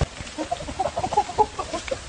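A thump right at the start, then a quick run of short, high animal calls, several a second, from about half a second in until near the end.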